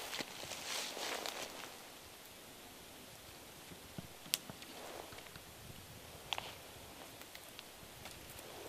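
Rustling of twigs and leaves as wild persimmon branches are handled and pulled down for picking. There are a few short sharp clicks about four seconds in and again after six seconds.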